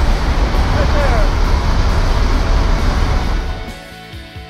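Loud roar of rushing wind and the Cessna Grand Caravan's turboprop engine through the open jump door, with a brief shout about a second in. Near the end the roar fades out and background music takes over.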